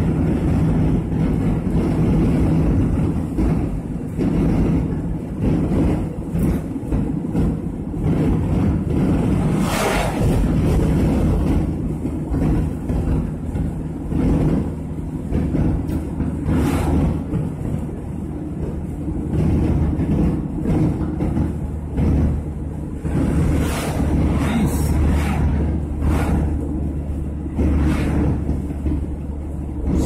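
Car cabin noise while driving: a steady low engine and tyre rumble, with a few brief whooshes of oncoming vehicles passing.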